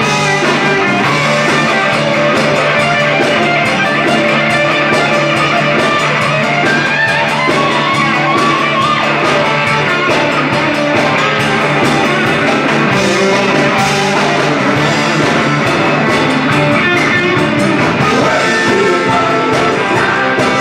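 Live rock band playing at full volume, with electric guitars over bass and drums.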